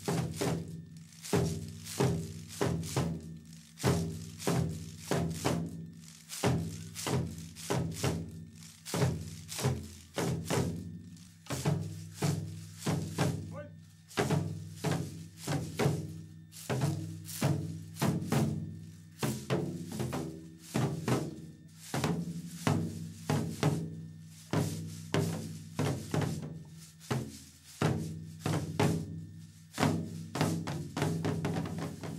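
Dengaku percussion: binzasara (wooden-slat clappers) clacking and waist-hung drums struck with sticks, in a regular pattern of accented strokes about once a second.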